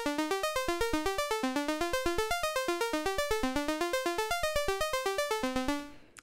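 ST Modular Honey Eater analog oscillator (CEM3340 chip) playing a sawtooth-wave tone in a fast sequenced pattern of short notes, about eight a second, in repeating rising runs. The pattern stops just before the end.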